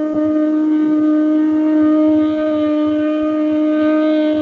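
One long, steady note held on a wind instrument, loud and unbroken, with fainter higher tones coming in about two seconds in.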